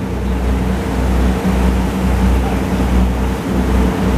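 Engine of a small passenger boat running steadily under way, a low drone mixed with the rush of its wake and wind on the microphone.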